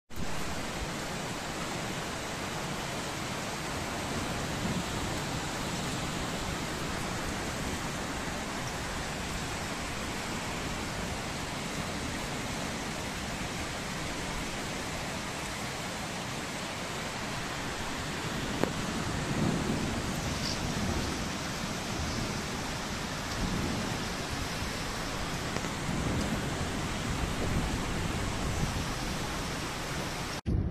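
Steady heavy rain falling in a hailstorm. A few low rumbles come and go in the second half.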